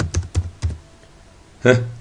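Computer keyboard being typed on: a handful of quick keystrokes in the first second, then a pause.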